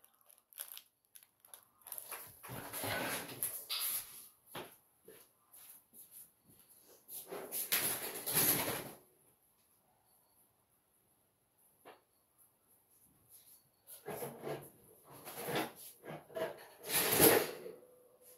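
Bursts of rustling and handling noise at a table, in three spells a few seconds apart, with a few small clicks between them.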